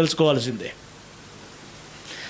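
A man's voice speaking into a microphone finishes a phrase, then breaks off about two-thirds of a second in. A steady faint hiss remains for the rest of the pause.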